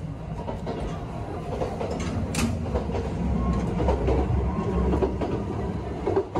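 Running noise of a Kintetsu 22600 series 'Ace' electric train heard inside the car, a steady low rumble of wheels on rail that grows louder in the second half. A brief sharp, high sound cuts in about two and a half seconds in.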